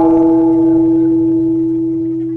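A single metallic bell-like tone ringing on and slowly fading, the sound laid over an animated logo sting.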